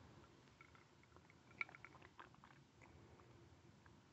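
Near silence: room tone, with a few faint small clicks about one and a half to two seconds in.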